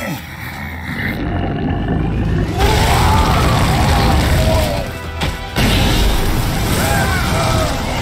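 A burst of flame erupts suddenly about two and a half seconds in and keeps going, dipping briefly and surging again about halfway through, while several voices cry out and shout over music. Before it, a fart and a groan are captioned at the very start.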